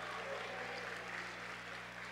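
Faint, scattered audience applause under a low steady hum.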